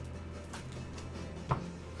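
Faint background music over a steady low hum, with one sharp click about one and a half seconds in as a trading card is handled on the table.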